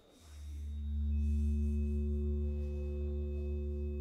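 Live electronic music through PA speakers: a low sustained drone swells in after a brief lull, with steady tones held above it and a thin high tone joining about a second in.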